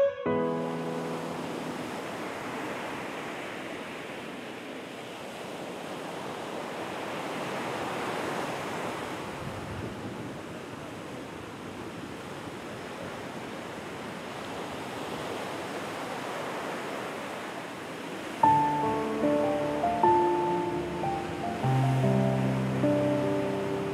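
Ocean surf on a beach: a steady rush of breaking waves that slowly swells and ebbs. About eighteen seconds in, soft music with picked notes comes in over the surf.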